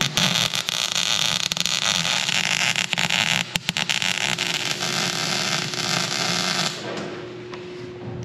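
Wire-feed welder arc crackling and sputtering steadily while a steel gusset is welded onto a sheet-metal box, cutting off about seven seconds in. A faint steady hum runs underneath.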